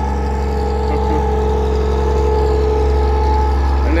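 Bedford 4.9-litre straight-six engine of a Green Goddess fire engine running steadily, a low drone with a steady higher hum over it.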